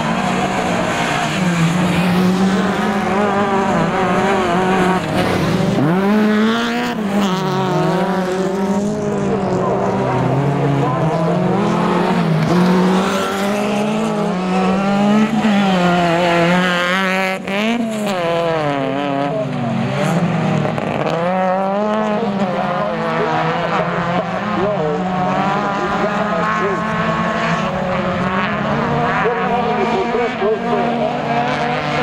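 Autocross race car engines on a dirt track, revving up and falling back again and again through gear changes and corners as the cars race.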